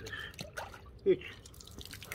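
Water dripping and sloshing as a sponge is dipped into a bucket of water and lifted out, with a short spoken word about a second in.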